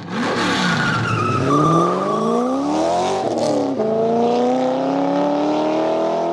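Car engine sound effect for a title sting: an engine revving up through the gears, its pitch climbing, dropping at a gear change near four seconds in, then climbing again, with a high falling squeal in the first two seconds.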